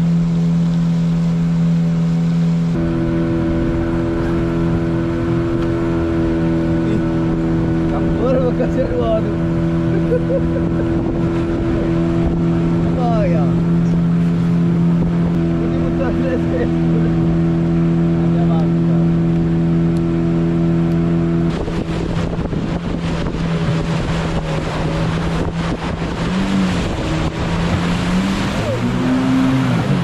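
Boat engine running steadily as the longboat motors upriver. About two-thirds through, rushing water grows louder and the engine note drops, then wavers up and down near the end as the boat meets rapids.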